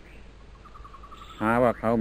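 A brief faint run of high, evenly spaced chirps, as of an insect, over the steady low hum of an old recording, in a pause in a man's talk. His speech resumes about a second and a half in.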